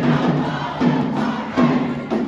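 High school pep band in the stands: a group of band members chanting in rhythm over the band's percussion, loud and steady.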